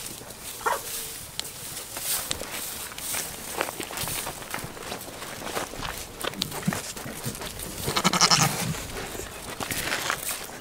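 A goat bleats once, loudly, about eight seconds in, amid scattered short clicks and rustles.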